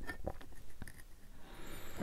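Faint light clicks and scrapes from handling a trading card in a rigid plastic top loader.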